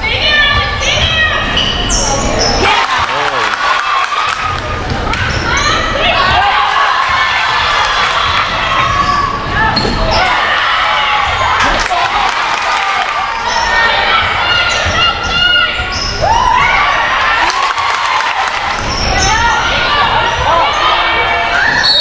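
Girls' basketball game in a large gym: the ball bouncing on the hardwood court, shoes squeaking, and players and spectators shouting, with the crowd cheering a basket partway through.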